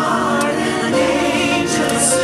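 A choir singing, its held notes wavering with vibrato.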